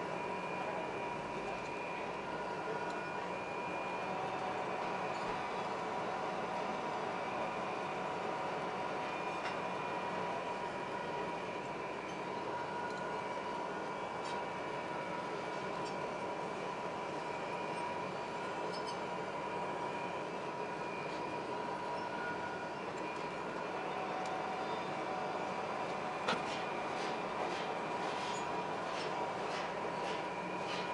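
Metal lathe running steadily with a high whine while a home-made roller presses against a spinning 2 mm sheet-steel disc, spin-forming it over a mandrel. A run of sharp ticks comes near the end.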